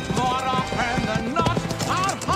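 Hoofbeats of animals galloping across sand, layered over orchestral film music.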